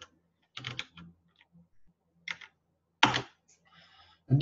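Computer keyboard typing: a few keystrokes in short, irregular groups, the loudest about three seconds in.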